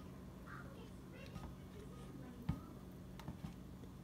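Faint scattered clicks and taps of metal kitchen tongs against bowls while chicken wings are dipped in hot sauce and coated in crumbs, with a soft knock about two and a half seconds in, over a low steady room hum.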